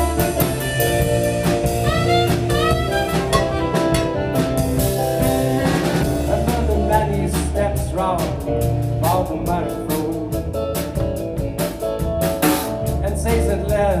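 A live rock band playing: electric keyboard chords and a drum kit with cymbals, with a gliding lead melody line over them.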